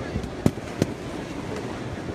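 Balloons being popped: two sharp pops less than half a second apart, about half a second in, over background chatter.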